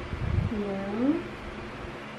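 A person's wordless murmured reply, one short voiced "mm" that dips and then rises in pitch, after a soft low rumble.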